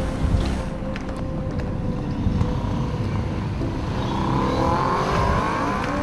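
Car engine running, heard from inside the cabin as a steady low rumble; over the last two seconds its note rises in pitch as the car accelerates.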